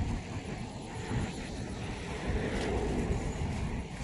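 A steady low rumble of noise, without any distinct event in it.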